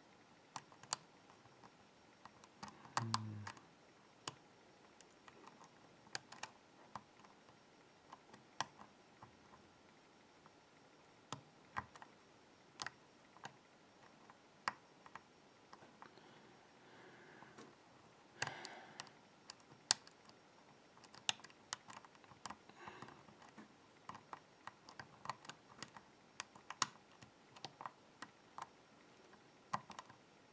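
Faint, irregular clicks of a steel hook pick working the pins of a BKS euro-cylinder lock under a tension wrench. There is a short low hum about three seconds in.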